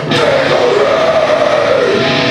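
Live death metal band on stage, loud: one sharp hit at the start, then a sustained wavering tone over a dense wash of noise, just before the full drums and guitars kick in.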